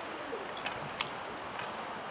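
Open-air stadium ambience: a steady background hiss, with a faint low cooing call like a pigeon's just after the start and one sharp click about a second in.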